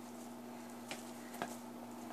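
Guinea pig biting into a carved bell pepper: two faint crisp crunches about half a second apart, over a steady low hum.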